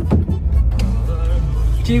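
Steady low rumble inside a car cabin, with a girl's voice heard faintly and muffled through the closed side window.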